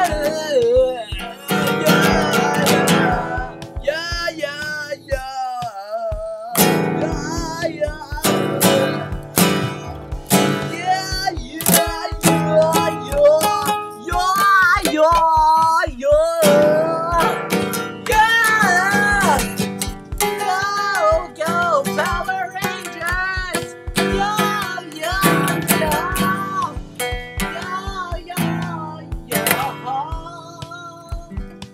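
Acoustic guitar strummed in chords, with a voice singing a wavering melody over it in phrases.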